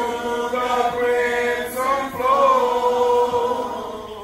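Slow singing of a hymn or chant, with long held notes that glide gently between pitches.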